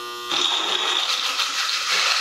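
Countertop blender running and crushing ice cubes with milk and coffee powder: a steady motor hum, joined shortly after the start by a louder rattling rush as the ice is broken up.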